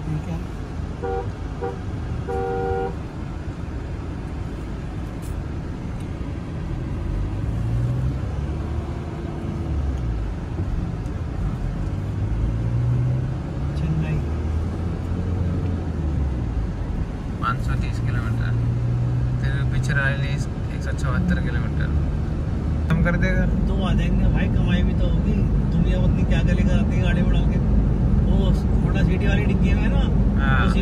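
Car driving on a highway, heard from inside the cabin. A vehicle horn gives two short beeps in the first few seconds. The engine note rises and falls through the middle as the car accelerates and changes gear, and the road rumble grows louder in the last third as it picks up speed.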